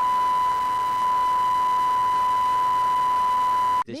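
Steady, high-pitched broadcast line-up test tone on a news agency's audio feed, held at one even pitch over a light hiss. It cuts off abruptly just before the end.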